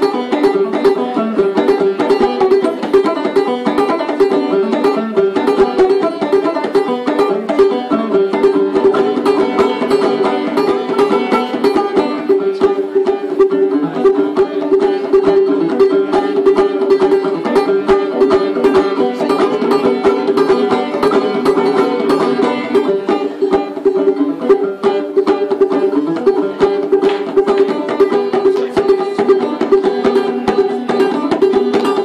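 Solo banjo playing a traditional American tune at a fast, even pace, with dense, rapid picked notes that run without a break.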